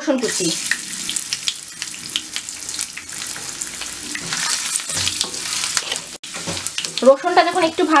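Garlic cloves frying in hot oil with whole spices: a steady sizzle with crackling pops, stirred with a spatula.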